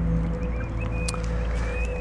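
Steady low rumble and hum, with a few faint short bird chirps in the second half.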